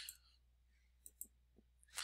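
Two faint computer mouse clicks in quick succession about a second in, against near silence.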